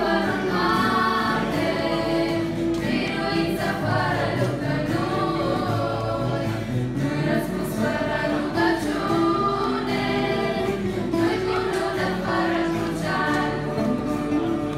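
A girls' vocal group singing a song together in several parts, the voices holding notes and moving in harmony without a break.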